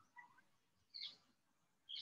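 Near silence, broken by two faint, very short chirp-like blips: one just after the start and one about a second in.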